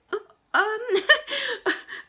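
A woman's voice: a brief "um", then about half a second in a run of short, halting voiced sounds that rise and fall in pitch.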